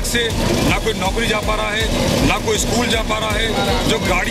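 A man speaking Hindi into news microphones at a street protest, over a steady low background rumble of outdoor noise.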